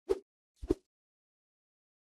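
Two brief sharp knocks about half a second apart, the second a quick double hit, with dead silence around them.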